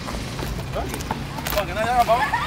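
Young men's voices talking, with a couple of sharp knocks of a basketball bouncing on an asphalt court.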